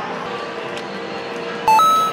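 Electronic two-note beep, a lower tone stepping up to a higher one, loud and lasting about half a second near the end, over a steady background of arcade machine music and din.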